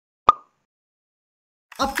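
A single short pop sound effect, a bright plop that dies away almost at once, about a quarter second in. A man's voice starts speaking right at the end.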